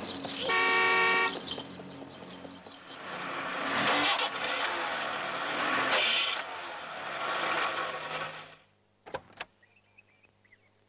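A car horn sounds once, under a second long, about half a second in. A rushing vehicle noise follows, swelling and fading, and cuts off sharply near the end. Two sharp clicks come just after, as of car doors.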